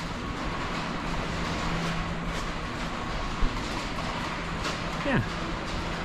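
Steady machine noise and hum filling a large metal building, with a low steady tone for the first couple of seconds and a single sharp knock about three and a half seconds in.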